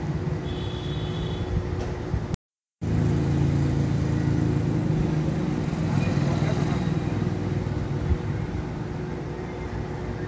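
Steady low hum of an electric sewing machine motor left running, dropping out completely for under half a second a little over two seconds in.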